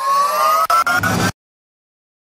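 A rising synthesized riser sound effect swells up, stutters with a few glitchy clicks, and cuts off suddenly a little over a second in.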